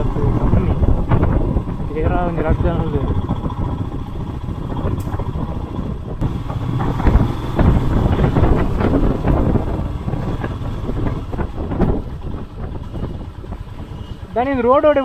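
Royal Enfield Himalayan's single-cylinder engine running at low speed as the motorcycle rides slowly along a rough dirt trail, heard from the rider's seat.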